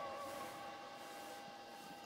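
Quiet room tone with a few faint, steady tones and no distinct events.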